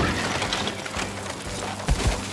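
Cartoon sound effect of a stretch limousine's side scraping along a tree branch: a rough, steady scrape ending in a thump just before the end.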